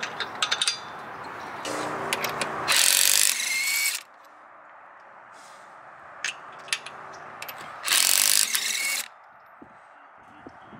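Cordless impact wrench loosening a car's lug nuts in two hammering bursts of about a second each, roughly five seconds apart, each after a short motor whir. Light metallic clicks in the first second as the lug nuts are handled.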